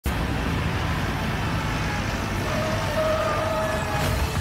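Film soundtrack: a steady low rumble like vehicle engines, with a held tone coming in about two and a half seconds in.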